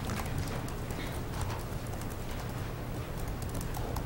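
Footsteps on a hard floor as several people walk around a room: light, scattered knocks over a steady low hum.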